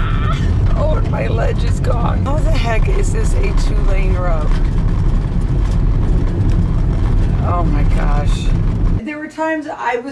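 Steady low rumble of a campervan driving on a gravel road, heard from inside the cab, with voices talking over it; the rumble cuts off suddenly near the end.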